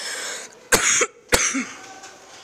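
A person coughing twice, two short, sharp coughs a little over half a second apart.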